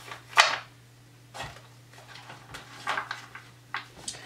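Cardstock journaling cards being handled and sorted on a desk: a few short rustles and taps, the loudest about half a second in.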